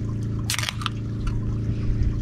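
An aluminium drink can's pull-tab cracked open once, about half a second in: a short, sharp crack and hiss, followed by a few faint ticks.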